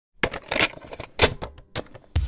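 A handful of sharp mechanical clacks at irregular spacing, the loudest about a quarter second and a second and a quarter in.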